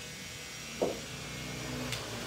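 Electric hair clipper running with a steady low hum. A short, louder knock comes about a second in, and a sharp click near the end.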